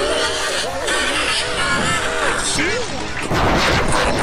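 Dense, chaotic mix of many overlapping voices and sound effects playing at once, several of them sliding up and down in pitch, with a crash-like noise among them.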